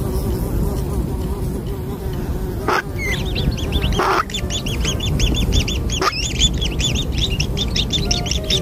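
Nestling birds begging with a rapid run of high, repeated chirps, about five a second, starting about three seconds in as an adult bird brings food. A few short sweeping calls and a steady low rumble sit underneath.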